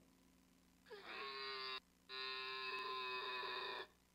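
Recorded animal call played through a phone's small speaker: two long, steady calls, the second nearly twice as long as the first, with a short break between.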